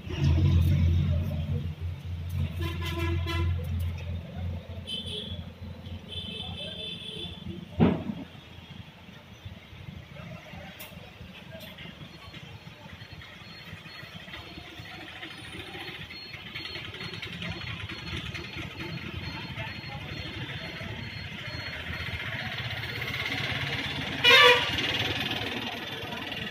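Road traffic with vehicle horns honking: a toot about three seconds in, higher beeping horn notes a few seconds later, and another short horn near the end, over a steady traffic background. A single sharp knock comes about eight seconds in.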